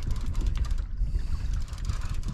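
Fishing reel being wound in, giving a fast run of fine ticking clicks through the first second that then thins out, over a steady low rumble.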